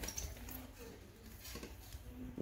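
Quiet kitchen handling: a steel mixer-grinder jar being tipped and dry breadcrumbs poured out onto a steel plate, with a couple of light knocks about one and a half seconds in.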